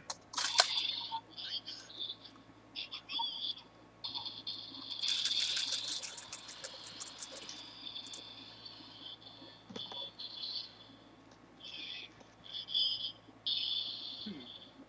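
Scattered small clicks and faint rustling on an open microphone, with a quick run of rapid clicks about five to seven seconds in.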